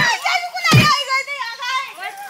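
Several women shouting and wailing in high voices over one another during a scuffle, with a heavy thump of a blow at the very start and another just under a second in.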